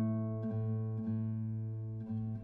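Solo classical guitar with nylon strings playing a slow passage: single plucked notes about every half second, each ringing and fading, over a held low bass note.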